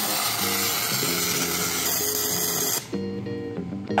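Arc welding on wrought-iron scrollwork: a steady hiss that stops about three seconds in, under background music.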